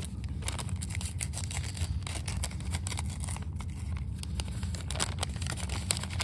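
Paper mailer and packing paper being torn open and handled, rustling and crinkling in irregular crackles, over a steady low hum.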